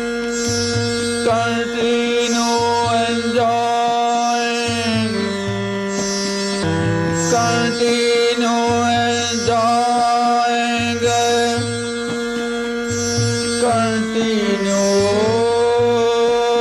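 Devotional song: a voice holds long notes that bend and glide, over a steady drone and a repeating low accompaniment.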